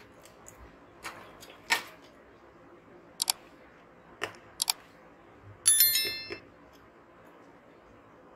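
A few sharp clicks, two of them in quick pairs like mouse clicks, then a short bright bell-like chime about six seconds in: the sound effect of an on-screen subscribe-button animation.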